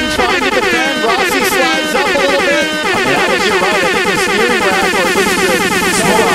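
IndyCar twin-turbo V6 heard onboard, its revs falling in several sweeping glides as the car slides, then holding a steadier note.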